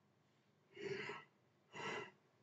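Two short breaths drawn by a person close to the microphone, one about a second in and another near the end.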